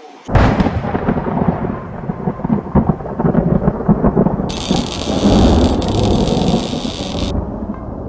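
Thunder sound effect: a loud rumble that cracks in suddenly just after the start and rolls on, with a steady high hiss from about halfway through until near the end.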